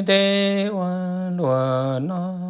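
A single voice chanting kwv txhiaj, Hmong sung poetry, in long held notes that step down in pitch twice and rise again near the end.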